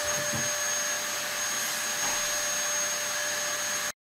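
A steady machine whoosh with a few faint steady whining tones running through it, like a running vacuum cleaner or similar motor-driven household appliance; it cuts off abruptly near the end.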